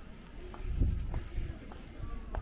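A bicycle passing close by, heard over the walker's own footsteps, which fall about twice a second.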